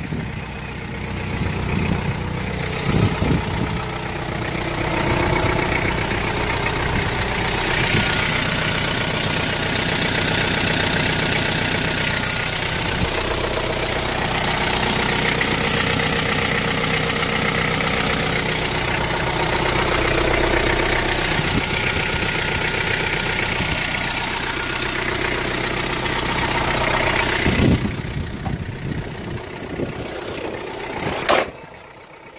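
Hyundai Starex's 2.5-litre turbo diesel engine idling steadily, with diesel clatter. A thin high whine comes and goes twice partway through.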